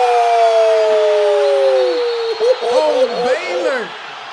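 A man's long drawn-out shout of astonishment, an 'ohhh' held for about two seconds and slowly falling in pitch, then shorter excited exclamations. Arena crowd noise from the game broadcast sits faintly underneath.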